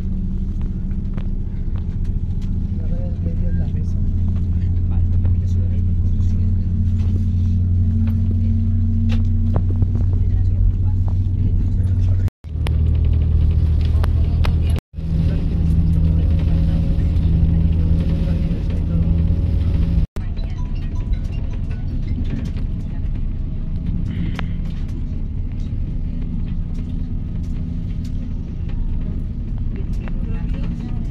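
Inside a moving passenger train: a steady low rumble with a held hum of the running train, cut off abruptly three times where the recording is edited.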